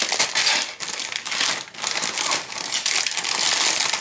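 Clear plastic bag crinkling as a plastic model-kit sprue sealed inside it is handled and pressed flat on a cutting mat, with a short lull partway through.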